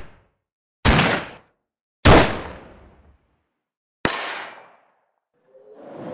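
Cinematic impact hits for title cards: three sudden strikes about a second, two seconds and four seconds in, each dying away in a reverberant tail, the last one softer. A faint swell of sound rises near the end.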